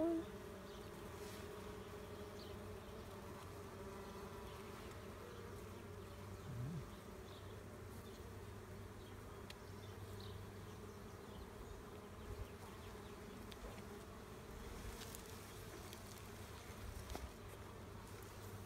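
A colony of honey bees buzzing steadily at an opened hive, a continuous hum. A brief low sound stands out about a third of the way in.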